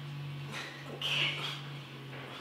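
People breathing hard during push-ups, with a sharp hissing exhale about a second in. A steady low hum runs underneath.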